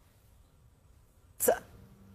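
Near silence, then about one and a half seconds in a woman's single short, sharp breath with a brief voiced catch.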